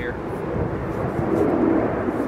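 Steady low rumbling noise of wind on the microphone in an open field. The word "here" is heard at the very start.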